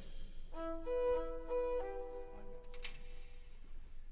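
Violins playing a short passage together: a few held notes in harmony, changing pitch two or three times, that stop after about two seconds, followed by a single click.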